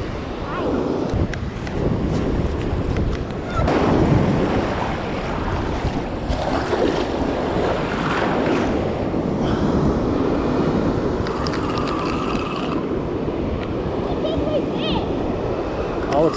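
Ocean surf breaking and washing up a sandy beach, with wind buffeting the microphone in gusts.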